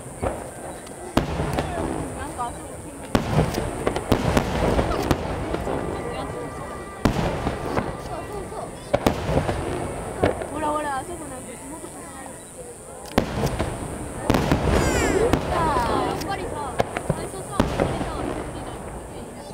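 Aerial firework shells bursting overhead: a series of sharp booms at irregular intervals, some in quick clusters, with a rumbling echo between them.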